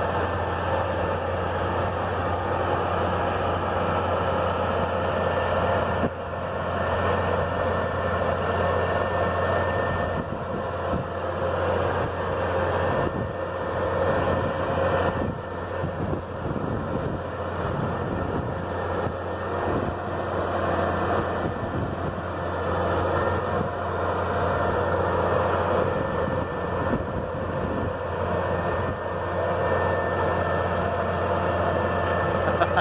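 Diesel engine of a Massey Ferguson MF 9330 self-propelled crop sprayer running steadily under load as the machine drives over loose stones and uneven ground.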